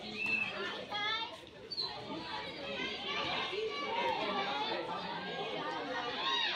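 Many girls' voices shouting and chattering over one another during a captain ball game, with short high calls.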